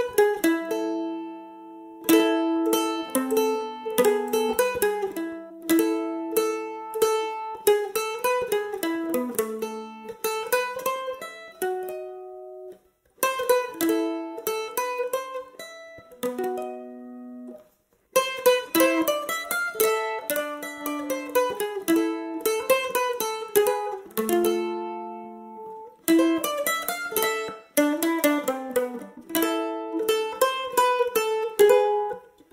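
Solo mandolin playing a traditional Polish folk melody: quick picked notes in phrases, some phrases ending on a held, ringing note, with two brief breaks between phrases.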